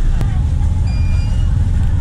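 Busy street at night: a steady low rumble of road traffic, with a single sharp click near the start and a short high electronic beep about a second in.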